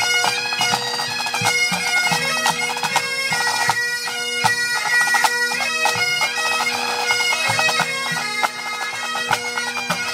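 A pipe band of Great Highland bagpipes playing a tune in unison over steady drones, with drum strokes beating through it.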